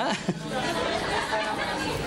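A man's short 'ah', then a low murmur of voices.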